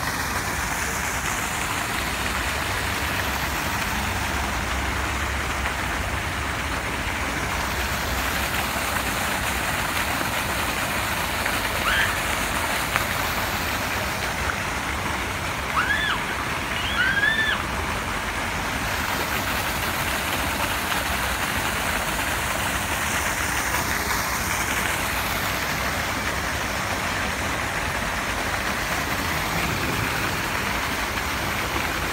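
Steady rush of falling water from a man-made garden water feature. About twelve seconds in there is one short rising-and-falling chirp, and a few seconds later three more in quick succession.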